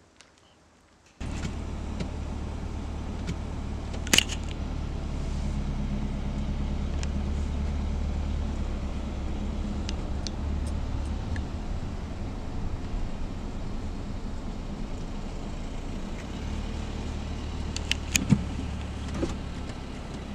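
Steady low engine and road rumble heard inside a car's cabin as it drives slowly, starting abruptly about a second in, with a few sharp clicks around four seconds in and near the end.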